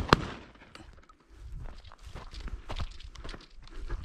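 A shotgun fires right at the start, with a second sharp crack a fraction of a second after it as the spent shell is ejected. Then come irregular footsteps and rustling on dry, stony ground.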